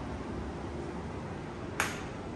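A single short, sharp click near the end, over a steady low hum of room noise.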